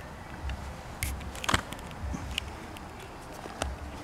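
Quiet outdoor background with patches of low rumble and a few scattered light clicks and rustles, the sound of someone handling gear; the drill is not running.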